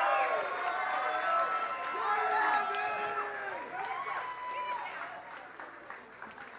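Crowd cheering and shouting, many voices overlapping, dying down over the seconds.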